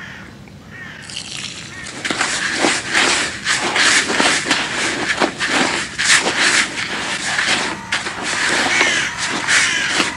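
Hand mixing crumbly feeder groundbait in a plastic bucket: a close, continuous gritty rustling and scraping of the crumbs, which grows louder about two seconds in.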